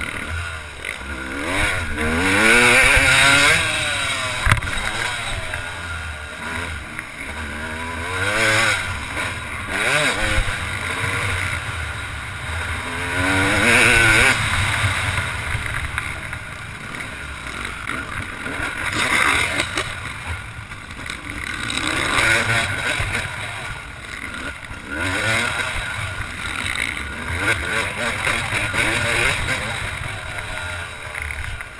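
Yamaha YZ250 two-stroke motocross engine revving hard and shifting up again and again, its pitch climbing in runs of a second or two and falling back several times.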